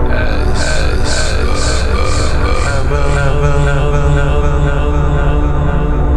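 Dark electronic industrial techno music: a heavy low drone under layered sustained tones, with a pulsing high hiss about twice a second that fades out about halfway through.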